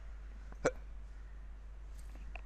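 A single brief hiccup-like vocal sound from a person, about two-thirds of a second in, over a steady low electrical hum.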